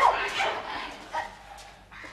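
A young woman's high wailing cries, sliding up and down in pitch, loudest at the start and dying away over about a second and a half, with one short cry near the end.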